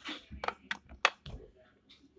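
A few light knocks and clicks from toys and the phone being handled and moved about. Several short taps come in quick succession in the first second and a half.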